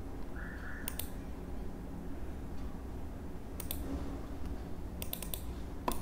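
Computer mouse clicking a handful of times, some clicks in quick pairs, over a faint low hum.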